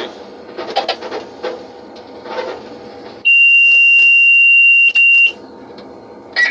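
A loud, high-pitched electronic alarm tone in a locomotive cab, starting about three seconds in and held for about two seconds with a brief break near its end, over the cab's running noise.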